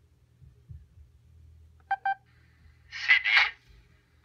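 PenFriend 2 talking label pen giving a short double electronic beep about halfway through, followed a second later by two short hisses.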